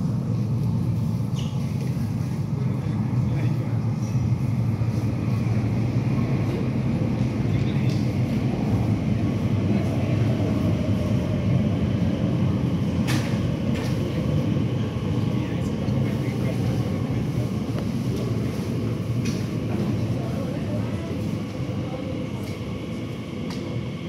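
Elizabeth line Class 345 train running into an underground platform behind glass platform screen doors: a steady low rumble that eases off over the last few seconds as the train comes to a stop.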